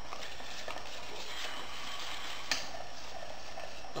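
A wire whisk stirs a dry flour mixture in a stainless steel bowl: a steady, light scraping and ticking of the wires against the metal, with one sharper click a little past halfway.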